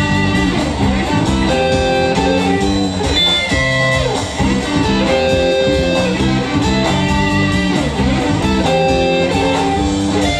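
Live band playing an instrumental passage: electric guitars and electric bass over a drum kit, with no vocals.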